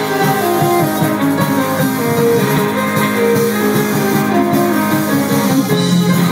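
Live band playing an instrumental passage with guitar, loud and even, heard through a phone's microphone from within the audience.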